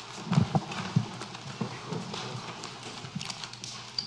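Irregular knocks, thuds and clatter of people getting up after a meeting: chairs being moved, things handled on tables, footsteps. The knocks are strongest in the first second.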